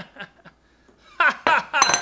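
A man laughing in a few short, falling bursts, with a light high clink near the end.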